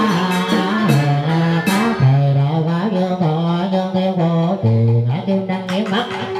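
Southern Vietnamese ritual music (nhạc lễ) from a small ensemble: a bending, sliding melody on the two-string fiddle (đàn cò) over keyboard and plucked guitar accompaniment.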